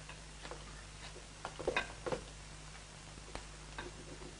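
Scattered light taps and scrapes of a utensil against a metal saucepan as food is scraped out of it onto plates, over the steady hum and hiss of an old film soundtrack.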